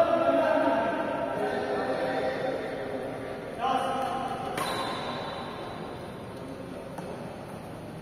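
Men's voices calling out and chatting in a large, echoing badminton hall, with one sharp crack of a racket striking a shuttlecock about halfway through.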